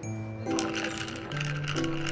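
A spoon stirring in a ceramic mug, clinking quickly and repeatedly from about half a second in, over background music.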